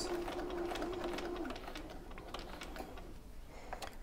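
Bernina sewing machine stitching slowly, its motor hum fading out about a second and a half in, leaving faint clicks.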